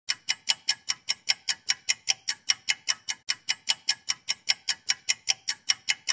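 Clock ticking, fast and even at about five sharp, bright ticks a second.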